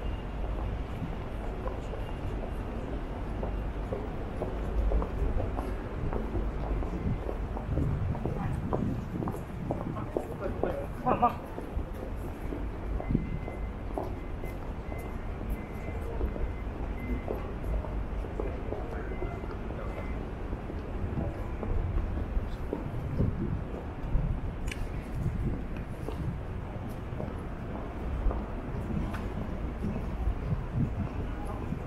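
Urban street ambience: a steady low rumble of road traffic, with passers-by talking.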